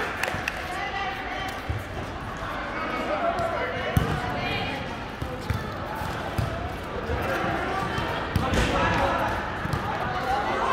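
Volleyball game sounds in a large indoor sports hall: balls thudding and bouncing, with a sharp ball strike about four seconds in, under the players' scattered voices.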